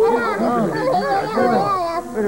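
Several overlapping voices wailing and crying out without words, each cry rising and then falling in pitch, several times a second.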